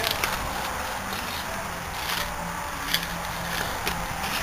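Steady background noise with a faint low hum and a few light knocks or clicks.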